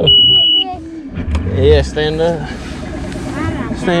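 Bass boat's ignition warning horn giving one steady beep of about half a second as the key is turned, then the outboard motor starting about a second in and running.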